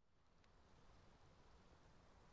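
Near silence: the faint steady hiss of a recorded phone voice message before anyone speaks, with one faint click about half a second in.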